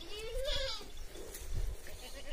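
A goat bleats once near the start, a single wavering call under a second long that rises and then falls in pitch, followed by fainter calls.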